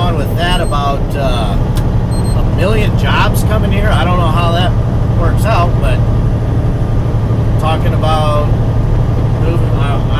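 Steady low drone of a semi truck's engine heard inside its cab, with a man's voice talking over it off and on.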